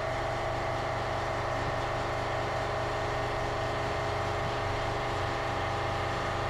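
Steady machine drone in a workshop, even in pitch and level throughout, with no knocks or breaks.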